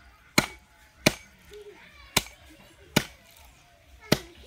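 A long, curved, wooden-handled chopping blade striking through raw chicken into a wooden block: four sharp chops, each under a second apart.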